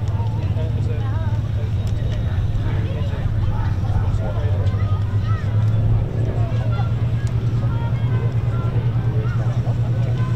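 De Havilland Mosquito's two Rolls-Royce Merlin V12 engines running at taxi power, a deep steady drone with a rapid throb that becomes more pronounced in the second half.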